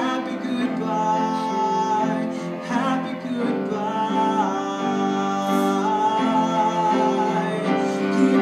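A grand piano playing a slow song, with a voice singing long held notes over it.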